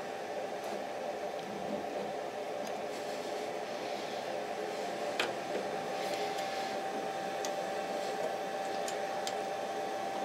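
A steady machine hum and hiss with a faint high whine from the powered-up CNC router, and a few light clicks as a hex key works the spindle-clamp bolts.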